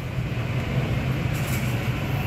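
A steady low hum of a motor or fan with room noise, and a faint brief rustle about one and a half seconds in.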